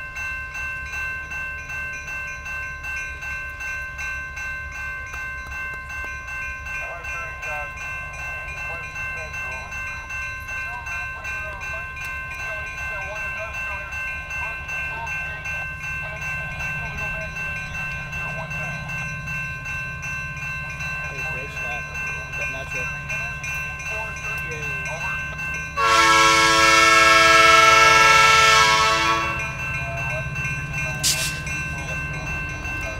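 Diesel freight locomotive's multi-chime air horn sounding one long blast of about three and a half seconds near the end. Under it, a grade-crossing bell rings steadily and the locomotive's low engine rumble grows louder as the train approaches.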